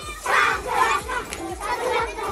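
A group of young children shouting together during a hand-holding circle game, in loud, irregular bursts of voices.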